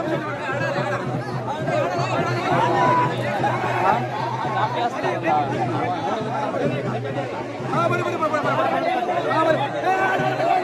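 A dense crowd of men, many voices talking and calling out at once, over a steady low hum.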